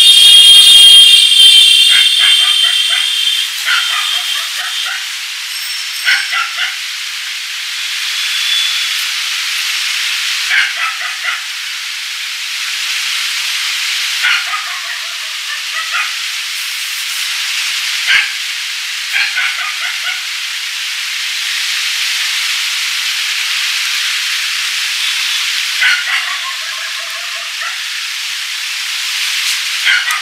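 Close-up sound of a barber's hands massaging a man's face and scalp: a steady rubbing hiss with small clusters of soft ticks every few seconds. A high ringing tone fades out over the first couple of seconds.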